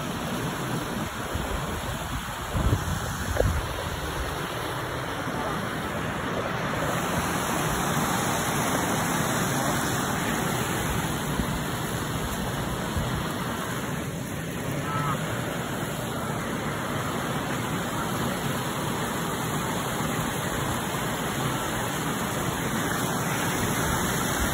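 A steady rushing outdoor noise that holds at an even level throughout, with two short low thumps about three seconds in.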